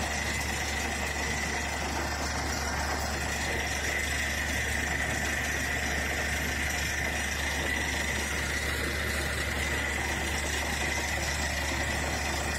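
A steady, unchanging drone like a running motor or engine, with a faint steady high whine over it.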